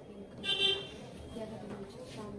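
A short, high-pitched horn toot about half a second in, over faint background voices.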